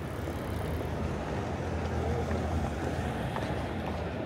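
City street ambience beside a road: a steady low traffic rumble that swells a little in the middle as vehicles pass, with passers-by talking.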